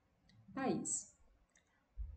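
A woman says one short word about half a second in, ending in a brief hiss. Faint mouth clicks come just before and after it.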